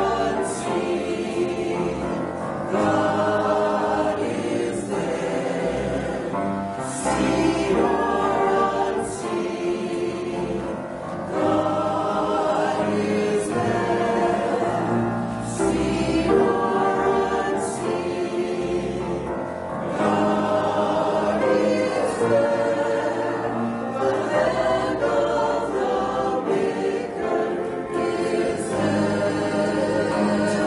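A small mixed group of men's and women's voices singing a hymn together in phrases a few seconds long.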